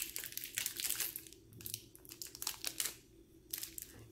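Thin plastic wrappers of fruit-leather snack strips crinkling and crackling as they are peeled open by hand, in irregular crackles that are densest in the first second and a half and then come only now and then.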